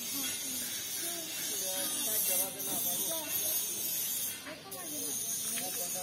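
Indistinct voices of people talking, over a steady high-pitched hiss.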